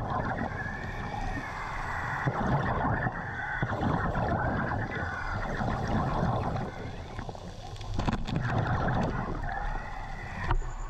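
Underwater scuba breathing: air drawn through the regulator and exhaled bubbles gurgling in slow breaths a few seconds apart, over a steady low water rumble.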